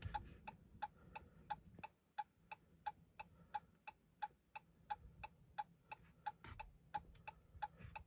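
Faint, even ticking from the car's turn-signal flasher, about three clicks a second.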